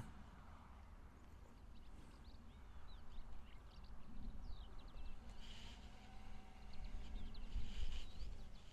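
Faint outdoor ambience: scattered short bird chirps over a quiet low rumble.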